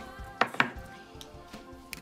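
Two quick sharp clicks about half a second in, small hard objects knocking as they are handled, over quiet background music.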